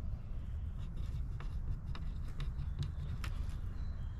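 A pen writing on a plastic zip-top bag: a run of short, scratchy strokes over a low, steady rumble.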